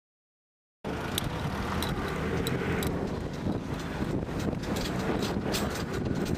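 Light van driving along a rough dirt field track: a steady engine and road rumble, with scattered sharp knocks and rattles. It cuts in suddenly about a second in.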